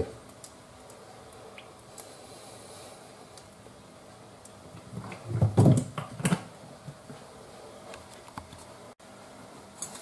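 Olive oil being poured into a non-stick frying pan, faint, then a short clatter of knocks about five to six seconds in, like the oil bottle and kitchen things being handled and set down on the counter.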